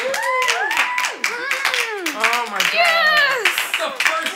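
A few people clapping, with high voices calling out excitedly over the claps.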